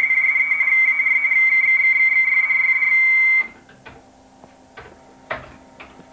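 A steady high-pitched radio tone, like a beep held on, from an amateur radio station's receiver speaker. It cuts off suddenly about three and a half seconds in, leaving a low hum and a few faint clicks.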